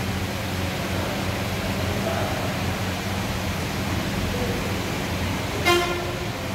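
Steady background noise with a low electrical-sounding hum, and one short pitched tone near the end.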